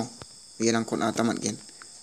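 A man speaking briefly in the middle, over a steady, high-pitched chirring in the background.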